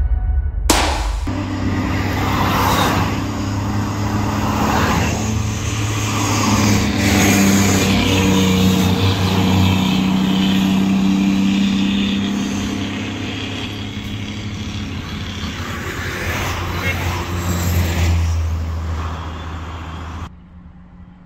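Highway traffic passing close by: a heavy dump truck and cars going past, their engine hum and tyre noise swelling and fading.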